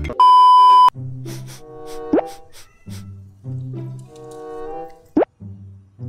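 Background music with added cartoon sound effects: a loud, steady beep lasting under a second near the start, then a light melody with two quick rising "plop" sweeps, about two seconds and five seconds in.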